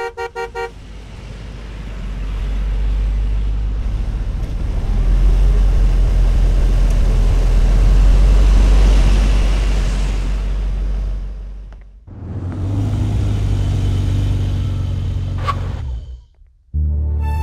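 A car horn gives a few short beeps, then a car drives past, its engine and road noise building to a peak about eight seconds in and fading away. After a sudden break comes a steadier low hum.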